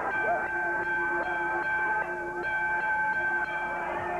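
Wrestling ring bell being rung over and over, its ringing held steady without dying away, with crowd voices shouting faintly underneath.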